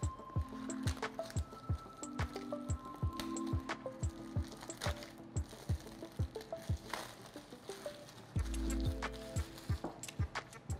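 Background electronic music with a steady drum beat and short melodic notes, with a heavier bass stretch near the end.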